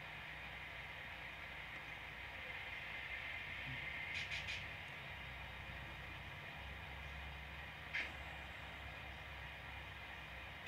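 Faint scraping ticks of a small metal spatula working the damp surface of Sculpt It modelling compound: a quick run of three light clicks about four seconds in and one sharper click about eight seconds in, over a steady background hiss.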